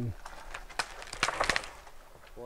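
A short spell of rustling and crackling with a few sharp clicks about a second in, like footsteps shifting in dry leaf litter.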